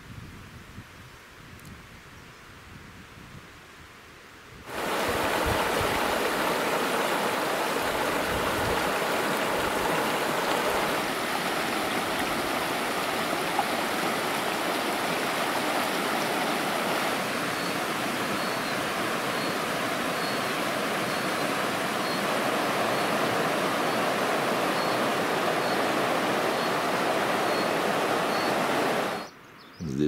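Shallow rocky mountain stream rushing over stones, a loud steady wash of water. It cuts in suddenly after about five quieter seconds and stops abruptly just before the end.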